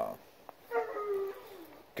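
A single drawn-out animal call, high-pitched and about a second long, sliding slightly down in pitch near its end.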